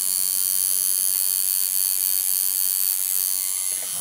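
Electric tattoo machine buzzing steadily as its needle works on the skin of a man's scalp.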